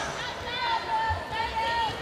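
Crowd noise in a volleyball gym: a steady murmur of spectators with a few voices calling out over it.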